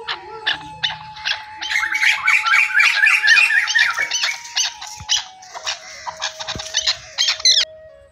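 Birds calling rapidly and repeatedly, many sharp high calls a second, loudest in the middle and cutting off suddenly near the end. A steady held tone of background music runs underneath.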